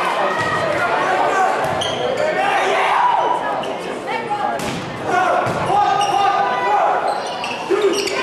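Indoor volleyball rally in a large, echoing gym: players and spectators shouting over one another, with a few sharp hits of the ball, one about two seconds in and another near five seconds.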